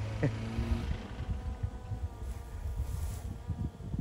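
Ford Focus engine running steadily at wide-open throttle at a distance, the car stuck in mud, with wind rumbling on the microphone.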